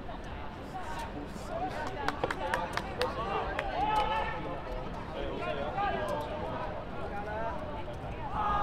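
Voices shouting on a football pitch during play, with a quick scatter of sharp knocks about two to four seconds in.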